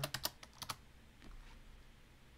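A quick run of about six computer keyboard keystrokes in the first second, typing an amount into a form.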